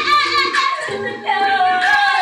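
Women's voices singing improvised a cappella over live-looped vocal layers, with one sung note held through the second half.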